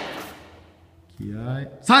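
A voice calling a karate count in Japanese: 'san' is shouted near the end, after a short quiet gap and a brief voiced sound.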